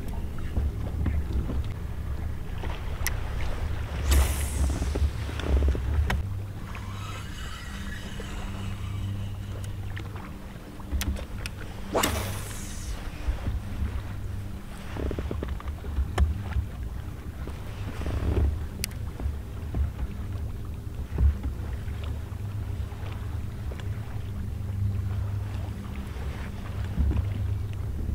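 Wind buffeting the microphone on open water: a gusting low rumble, with a faint steady low hum underneath. There are a few short swishes, about four and twelve seconds in.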